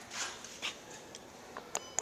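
A few soft knocks and scuffs, then a short electronic beep near the end.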